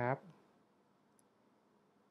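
The last word of a man's speech, then near silence with one faint, short click about a second in.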